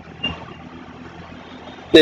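Low steady background hum of a quiet room picked up by the recording microphone, with one faint brief blip about a quarter second in. A man's voice starts right at the end.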